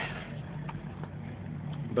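A steady low hum like a running motor.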